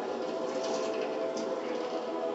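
A cartoon soundtrack from a TV speaker: a steady mechanical whirring with held tones underneath.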